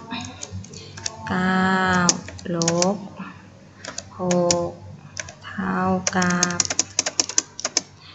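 Computer keyboard keys clicking as a subtraction problem is typed, in short scattered runs, with a quick flurry of keystrokes near the end.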